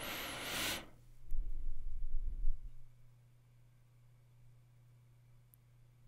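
A short breathy hiss at the start, a few soft low bumps, then only a faint steady low hum.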